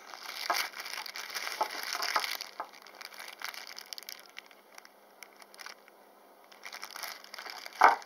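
Clear plastic bag crinkling as it is handled, loudest in the first couple of seconds and again near the end. A single sharp knock comes just before the end.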